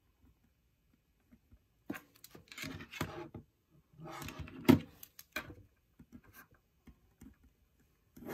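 A paper planner sheet being shifted and handled on a desk, with rustling and sliding in two short spells and one sharp tap about four and a half seconds in, followed by a few faint clicks.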